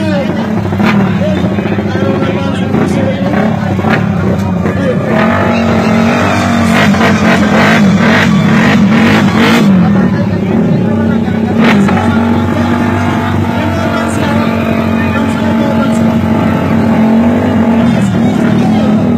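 Small drag-racing motorcycle engines running at high revs at the start line: a steady, loud drone whose pitch wavers up and down as the throttles are worked. Crowd voices run under it.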